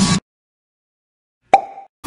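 Intro music with rising sweeps cuts off abruptly just after the start, followed by dead silence. About a second and a half in comes a sharp pop with a brief tone that fades within half a second.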